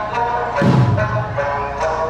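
Okinawan Eisa accompaniment: sustained sanshin and sung notes from the jikata, with one deep drum stroke about half a second in.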